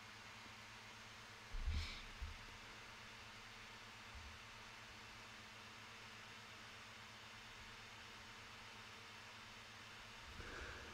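Near silence: faint room tone with a steady hiss. About one and a half seconds in there is a brief soft low bump, followed by a small tick.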